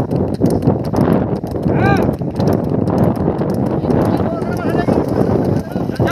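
Racing bullocks' hooves and cart clattering in quick, irregular beats, with men shouting over them; a loud rising-and-falling shout comes about two seconds in and more calls near the end.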